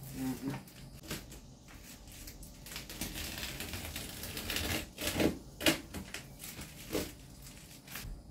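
Reflective thermal insulation film being cut and pulled by hand: irregular crinkling and crackling with sharper clicks, a few louder ones in the second half.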